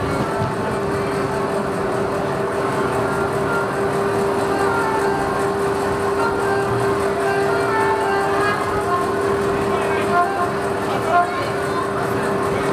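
Voices over live band music, with a steady droning tone underneath.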